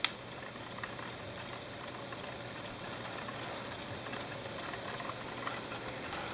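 Steady, even hiss-like running noise from a homemade high-voltage electrostatic motor, a plastic jar spinning on a pivot, with a couple of faint ticks.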